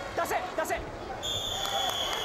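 Wrestlers' bodies thudding on the mat a few times amid arena crowd voices, then a long steady high-pitched whistle blast starting a little past halfway.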